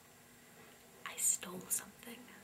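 Quiet, breathy speech: a single softly spoken "No" about a second in, after a second of near silence.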